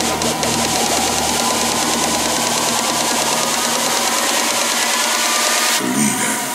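Psychedelic trance breakdown: a warbling synth tone over a loud wash of noise. The deep bass drops away about two seconds in, and a sharp hit lands just before the end.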